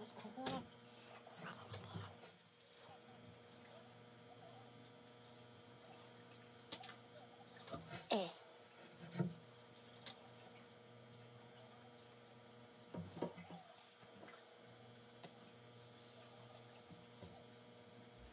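Mostly quiet room tone with a few faint, brief scrapes and taps from hands handling pieces of bark and a can of spray foam, including one short falling squeak about eight seconds in.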